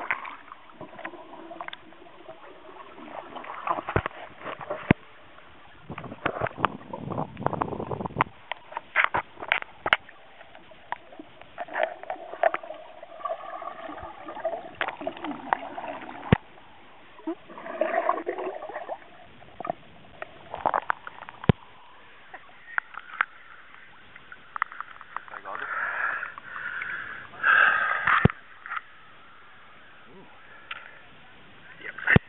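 Muffled sound from a camera held underwater in a lake: water movement with many scattered sharp clicks and knocks. A louder splashing burst comes near the end as the camera comes back up through the surface.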